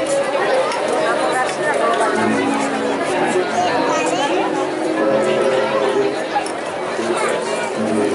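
Audience chatter, many voices talking at once, with a few held musical notes underneath from about two seconds in.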